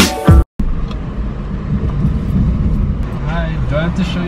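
Music with sharp drum hits cuts off abruptly about half a second in. It gives way to the low, steady rumble of a car cabin as the car rolls slowly. A voice speaks faintly near the end.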